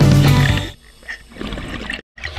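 Background guitar music that fades out within the first second, leaving a quieter stretch of faint underwater noise.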